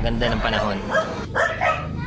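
A person speaking, with low car road rumble that fades out about halfway through.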